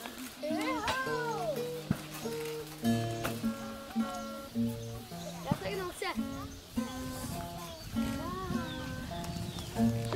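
Acoustic guitar played one note at a time in a slow run of short separate notes, with children's voices calling out over it.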